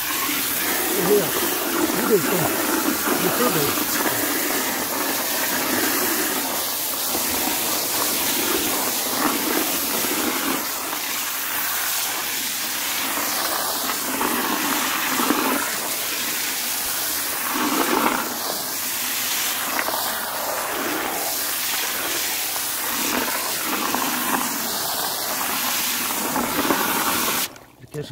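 Unshelled peanuts being stirred and scrubbed in a tub of muddy water: a steady rush of water with irregular sloshing as the shells rub against each other to loosen the soil. The sound cuts off suddenly just before the end.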